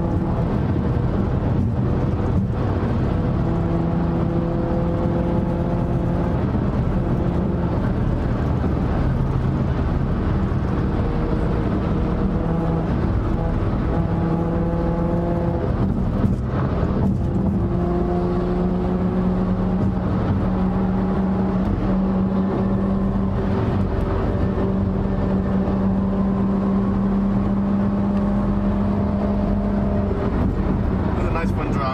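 Car engine and tyre and road noise heard inside a BMW M2's cabin while cruising at highway speed. The engine drone holds a steady pitch for a few seconds at a time and shifts up or down several times as the throttle or gear changes.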